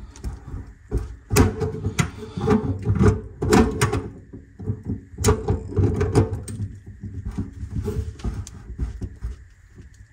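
Channel-lock pliers tightening the locknut of a kitchen sink basket strainer, with irregular metallic clicks and scrapes over low knocking and handling rumble. The sounds thin out over the last few seconds as the nut snugs up.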